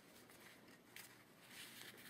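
Faint rustling and scraping of a cotton handkerchief and thin craft wire being twisted by hand, in a few soft bursts against near silence.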